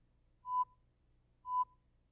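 Countdown-leader beeps: two short, high electronic tones a second apart, over a faint low hum.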